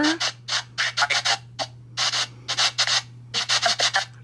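SBX12 Spirit Box app on a phone sweeping through FM radio channels, giving loud, choppy bursts of static a few times a second with short gaps between them. A steady low hum runs underneath.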